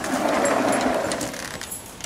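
Sliding glass patio door rolling open along its track: a rumble that starts suddenly and fades out over about a second and a half.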